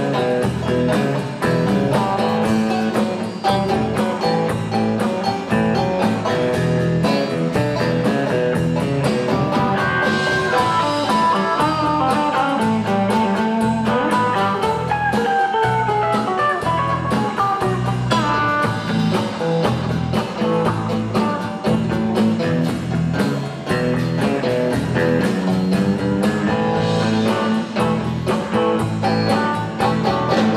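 Country-rock band playing an instrumental passage: electric guitar over bass guitar and drum kit, with a lead guitar line bending in pitch around the middle.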